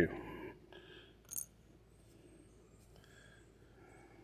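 Near silence with one light, short metallic click about one and a half seconds in, from small bike-brake parts being handled.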